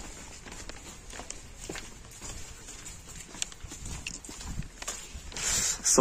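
Footsteps of people walking along a wet concrete lane: faint, irregular taps and scuffs of shoes. A short rise of hiss comes near the end.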